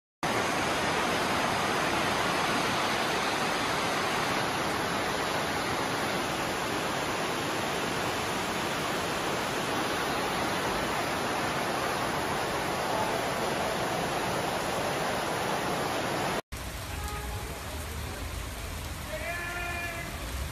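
Floodwater rushing and churning across a flooded station concourse: a loud, steady rush of water. About three-quarters of the way through it cuts off abruptly to a quieter recording with a low rumble and a brief voice near the end.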